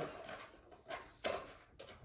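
Quiet handling of a small cardboard box being opened, with one short rustle of the box flap about a second in.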